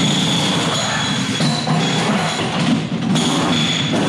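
Pneumatic wheel guns (rattle guns) running in a race team's pit garage during pit stop practice: a rapid mechanical rattle under a high whine that eases off in the middle and comes back near the end, together sounding like a railway.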